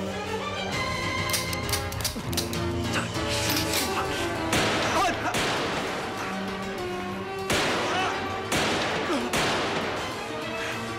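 Film score music with held notes. In the second half come four sudden, loud, noisy crashes, each fading over about a second.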